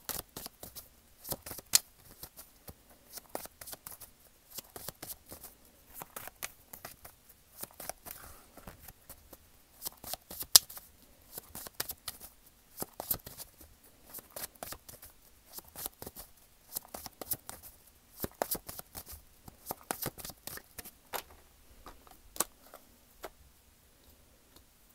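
Ethereal Visions tarot deck being shuffled by hand: a run of quick, irregular card snaps and riffles, with a few sharper slaps, the loudest about halfway through.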